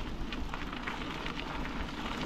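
Bicycle tyres rolling over a loose gravel path: a steady crunching crackle of small stones, with a low rumble underneath.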